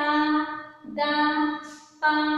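A woman's voice chanting Telugu syllables in a sing-song way: two long notes, each held on a level pitch for under a second, with a short break between them.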